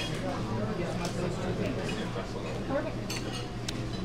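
Diner background of dishes and cutlery clinking, with a couple of sharp clinks near the end, under low chatter from other diners and a steady low hum.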